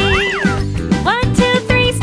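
Children's song with a bouncy backing track and a sung line. Early on, a quick sliding sound rises and falls in pitch over the music.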